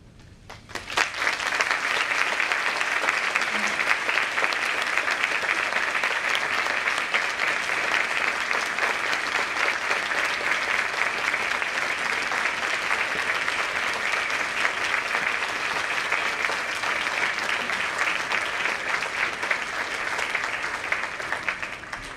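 Audience applauding: many hands clapping together in a dense, steady patter that starts about a second in and fades out near the end.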